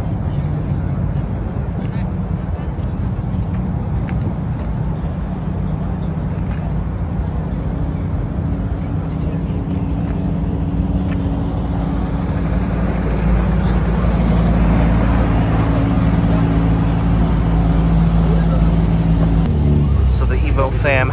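Bosozoku-style car engine idling, a steady low rumble that grows louder and fuller about two thirds of the way in.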